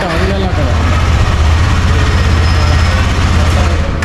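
KTM 250 Adventure's single-cylinder engine idling steadily, a low, even pulsing hum.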